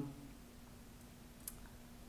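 Quiet room tone with a faint steady hum and one small click about one and a half seconds in.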